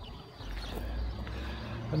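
Outdoor background: a low steady rumble comes in about half a second in, with a few faint bird chirps.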